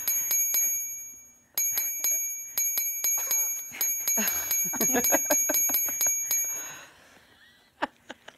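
Rapid bell-like ding sound effect struck a few times a second, one ding for each handshake counted on screen. It breaks off briefly about a second in, then rings on until about a second before the end.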